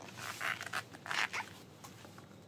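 Inner side zip of a patent vinyl thigh-high platform boot being pulled up, in two short strokes about a second apart.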